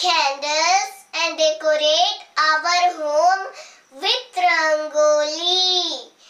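Speech only: a young girl reciting a sentence in a high, sing-song voice, in several phrases with short breaks between them.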